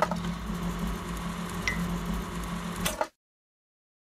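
Indoor room noise with a steady low hum, opening and closing with clicks, with one short high chirp partway through. It cuts off abruptly about three seconds in.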